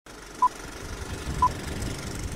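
Two short electronic beeps at one pitch, about a second apart, over a steady low rumble.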